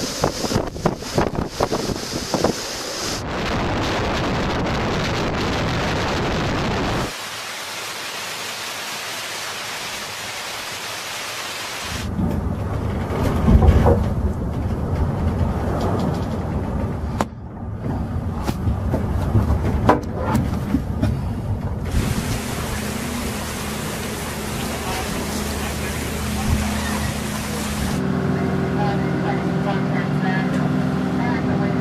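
Storm sounds from several clips in turn: wind on the microphone, rain and sea noise, changing abruptly every few seconds as one recording gives way to the next.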